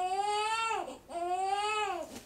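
Newborn baby crying: two cries, each just under a second, the pitch rising and then falling in each.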